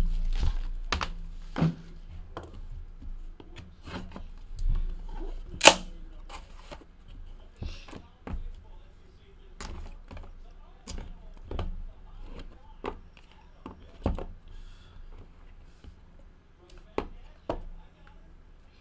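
Scattered taps, knocks and clicks of a Panini National Treasures cardboard box and its inner box being handled and set down on a table, with one loud click a little under six seconds in.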